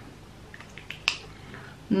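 A pause with quiet room tone: a few faint ticks, then one short sharp click about a second in.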